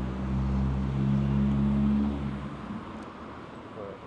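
A motor vehicle's engine running close by on a city street, a steady low hum that stops about two and a half seconds in, over general traffic noise.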